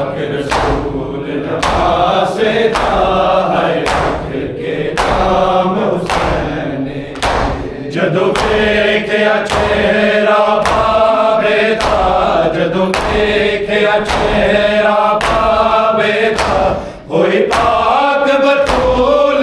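Men chanting an Urdu nauha lament together in a sing-song chorus, with a crowd beating their bare chests in unison (matam), a sharp slap about once a second keeping the rhythm. Loudness drops briefly near the end.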